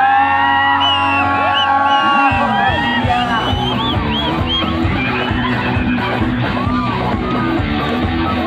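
Live rock band playing through a loud PA: sustained held notes for the first couple of seconds, then drums and bass come in with a driving beat, with the crowd yelling over the music.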